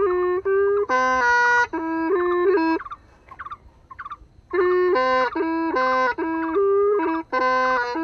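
Hmong raj nplaim, the bamboo free-reed pipe, playing a melody of short stepped notes and held notes with a reedy, buzzing tone. The playing breaks off for about a second and a half near the middle, then resumes. The tune is a courting melody played to win a young woman's heart.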